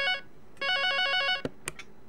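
Electronic telephone ringtone on the show's call-in line: a warbling trill that rings in two bursts, then stops. Two sharp clicks follow as the call is picked up.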